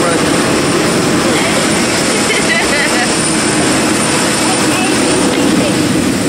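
Aircraft engine running steadily on the airport apron: a loud, even rush with a thin high whine held throughout.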